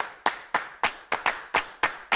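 Rhythmic hand claps, about five a second, in a quick, slightly uneven pattern.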